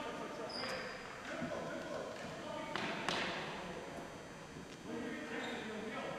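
Distant players' voices echoing around a gymnasium during ball hockey play, with one sharp knock about three seconds in from a stick or ball on the hard floor, ringing off the walls.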